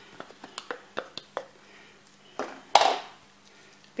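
A clear plastic container being handled on a kitchen counter: a run of light clicks and taps, then two louder rustling knocks about two and a half and three seconds in.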